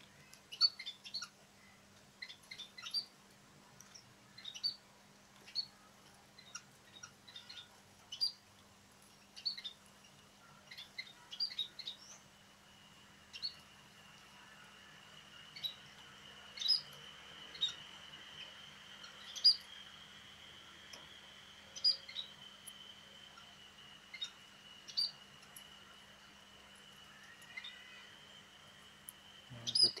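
Small munias (emprit) chirping in an aviary: short, high, single chirps at irregular intervals, one or two a second. A steady high whine sets in about twelve seconds in, and a faint low hum runs underneath.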